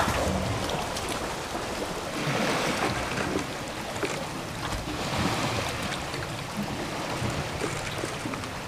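Water sloshing and splashing in a plastic bucket as a gloved hand chases small live bait fish (oama), over a steady rushing background noise.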